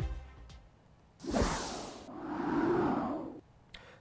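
Background music fading out, then a whoosh transition sound effect: a rush of noise that swells about a second in and dies away over about two seconds.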